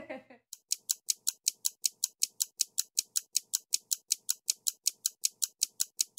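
A rapid, even ticking of short, sharp clicks, about five or six a second, starting about half a second in: an edited-in ticking sound effect over a title-sequence transition.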